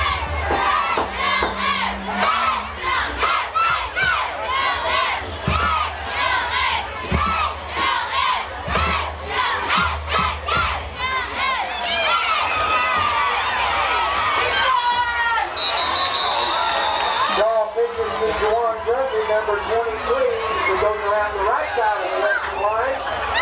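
Football crowd cheering and shouting during a play, many voices yelling over one another.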